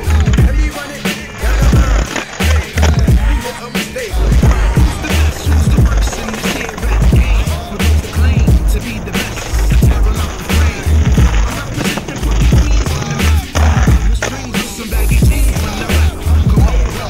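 Hip hop music with a heavy, steady bass beat, mixed with skateboard sounds: wheels rolling and the board clacking on the pavement.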